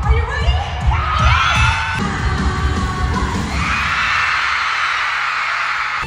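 Live pop concert music with a pulsing drum beat and singing for the first two seconds or so, then the band drops away and an arena crowd screams and cheers to the end.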